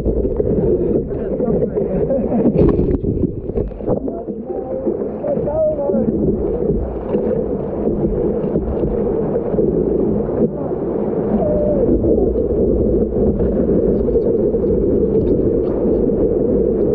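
Muffled, steady rush of surf water sloshing and splashing around a surfboard-mounted camera as the board is paddled into a breaking wave and ridden. A man laughs at the start.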